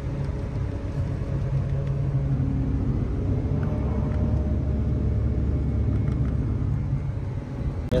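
Self-propelled forage harvester running under load while chopping corn for silage: a steady low drone, which goes deeper for a few seconds around the middle.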